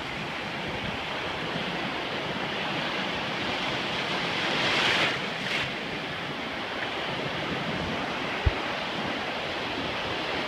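Ocean surf washing steadily in shallow water around a phone held close to the surface, a wave surging up about halfway through. A single short knock comes near the end.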